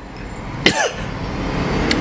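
A man's short vocal sound, like a brief cough or grunt, comes about two-thirds of a second in. It sits over a low background rumble that grows louder toward the end, and a faint mouth click comes just before speech resumes.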